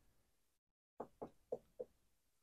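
Four faint, sharp clicks, about four a second, from a finger pressing the push buttons on an FG-200 DDS function generator.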